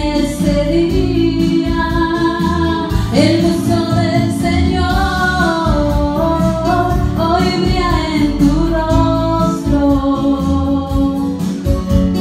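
A girl singing a song into a microphone, amplified over the hall's speakers, with musical accompaniment beneath; her voice holds long notes that slide up and down in pitch.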